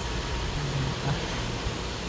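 Electric pedestal fan running: a steady, even whirring noise with a low rumble.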